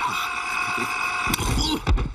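Cartoon sound effect of a remote-controlled extendable robotic arm stretching out: a steady mechanical whine, with a sharp knock near the end.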